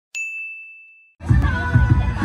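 A single bright, bell-like ding sound effect, struck once and ringing out with a pure high tone that fades over about a second. About a second in, it gives way to music with voices of a chatting crowd.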